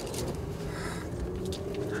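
Quiet outdoor background in a pause between speakers: a faint steady low hum, with a brief faint rustle near the middle.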